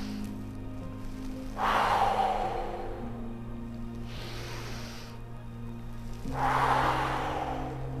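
A woman breathing audibly through paced yoga breaths: two loud exhales, about a second and a half in and again about six seconds in, with a softer inhale between. Soft background music with sustained chords plays underneath.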